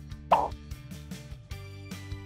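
A single short cartoon-style plop sound effect about a third of a second in, followed by soft background music with held notes.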